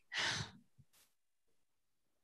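A woman's short breathy sigh, about half a second long, followed by a faint click and then near silence.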